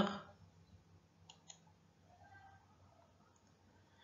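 Near silence with two faint, short clicks close together about a second and a half in.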